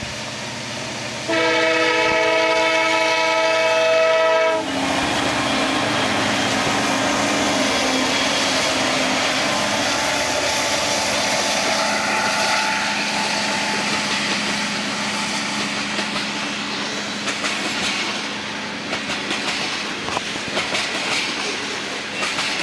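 Air horn of a CN EMD SD70M-2 freight locomotive sounding one long blast of a few seconds, starting about a second in and cutting off. Then the locomotives and freight cars roll past with a loud, steady rumble, and the wheels click over the rail joints near the end.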